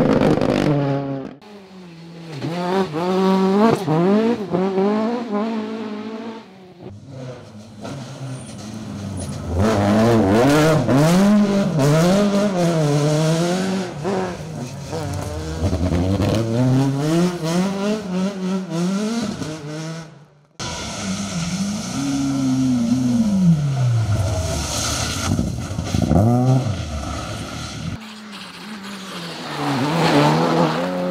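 Rally cars going past at speed in a run of short clips, engines revving hard and dropping back again and again through the gears; the car in the middle clips is a Mk2 Ford Escort. The sound cuts off suddenly between clips.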